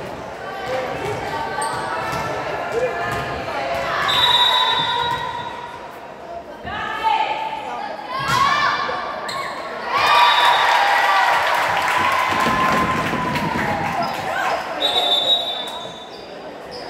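Indoor volleyball rally on a hardwood gym court: sharp hits of the ball, shoe squeaks on the floor, and players' and spectators' voices, all echoing in the hall.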